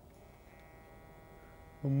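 Hornby Class 395 Javelin model train's basic worm-drive motor bogie giving off a faint, steady musical whine as it runs. Near the end a much louder steady note comes in.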